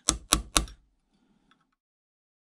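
Steel centre punch struck with a hammer on a brass bush set in a steel plate: three quick, sharp metallic taps in the first half-second or so, marking centre dots.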